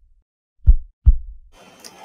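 Heartbeat sound effect: one lub-dub pair of short, low thumps a little under half a second apart. It gives way to faint room tone near the end.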